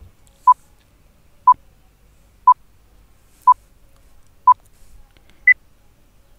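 Countdown timer sound effect: five short beeps at one pitch, one a second, then a sixth, higher beep that marks the end of the time allowed to answer.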